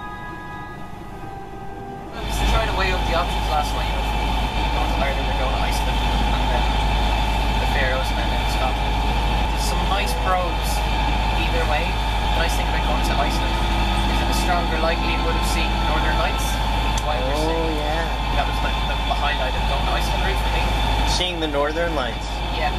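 Orchestral music for about the first two seconds, then a sailboat's inboard diesel engine running with a steady low drone under conversation.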